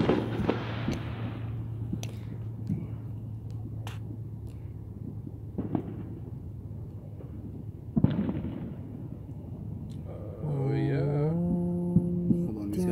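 Fireworks going off: a loud bang with a long rolling rumble at the start, a few fainter pops, then another bang and rumble about eight seconds in. Near the end a pitched, stepping musical tone comes in.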